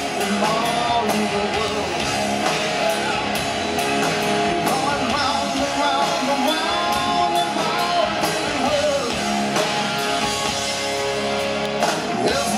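Hard rock band playing live: electric guitars, bass and drum kit, with a male lead vocal.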